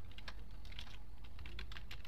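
Typing on a computer keyboard: a quick, uneven run of key clicks as a word is typed out.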